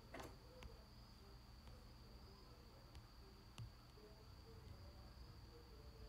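Near silence: room tone with a faint steady high-pitched whine and a few soft clicks.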